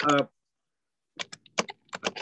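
Computer keyboard being typed on, coming through the call from an unmuted participant's microphone: a quick run of key clicks starting a little over a second in, after a moment of dead silence.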